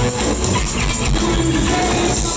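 Live rock band music playing loud and steady, with an electric bass among the instruments.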